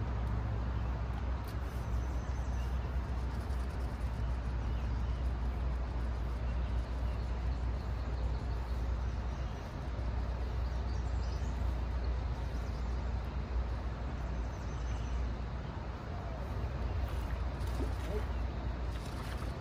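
Steady rushing noise of a river with rapids upstream, under a constant low rumble.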